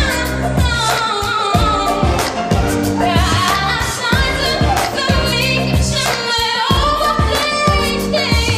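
A woman singing a pop song into a handheld microphone over an accompaniment with bass and a steady beat.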